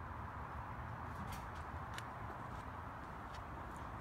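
Steady, low-level outdoor background noise: a hiss with a low rumble under it, and a few faint ticks.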